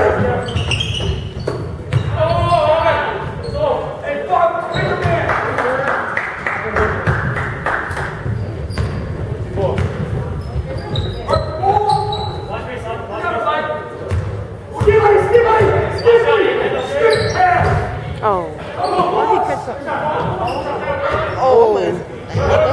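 A basketball dribbled and bouncing on a hardwood gym floor during a game, under players' and spectators' voices that echo through a large gymnasium.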